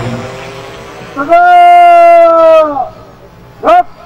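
A man's shouted parade-ground drill command: one long, loud held call of under two seconds that drops in pitch at its end, then a short, sharp call about a second later.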